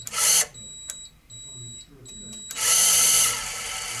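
Kolver Pluto 10 electric screwdriver, fitted with a rotary torque transducer, running free. There is a short burst right at the start. About two and a half seconds in, the motor whirs up loudly, then settles to a lower, steady run. The tool has an intermittent fault with the transducer fitted: it sometimes slows down instead of running through its set time.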